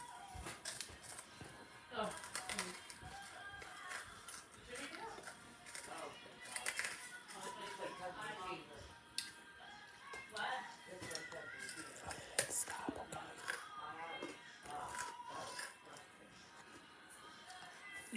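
Faint voices and music in the background, with a few short crinkling sounds from a snack bag being handled.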